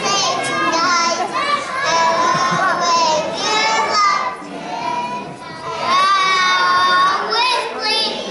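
Young children singing together in high voices, with long drawn-out notes and a softer stretch about halfway through.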